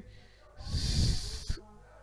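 A loud breath drawn close to the microphone, about a second long, in a pause between spoken phrases.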